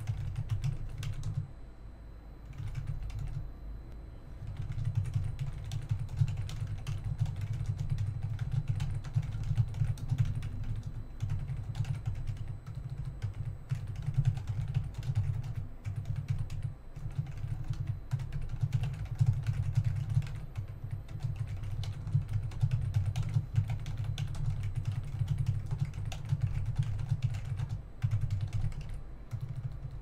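Fast typing on a computer keyboard: a continuous run of key clicks with short pauses about two and four seconds in.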